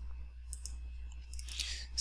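A pause in speech: a few faint clicks about half a second in and a short breath in near the end, over a steady low hum.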